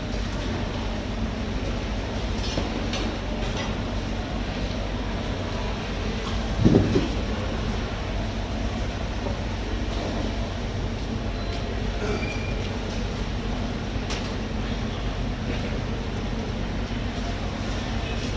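A steady low mechanical rumble, with one brief loud pitched sound about seven seconds in.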